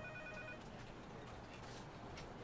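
An electronic telephone ring, a pulsing tone with several pitches, that stops about half a second in; after it only faint room tone with a few light clicks.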